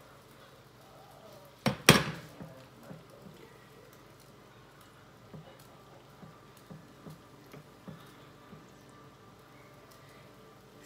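A glass mixing bowl knocks sharply twice in quick succession about two seconds in as it is put down, followed by soft, light taps about every half second as a silicone basting brush dabs sauce onto a meatloaf in a glass loaf pan.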